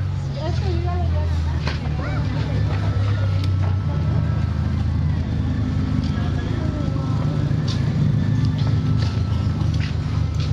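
Street ambience: a steady low rumble with faint voices in the background.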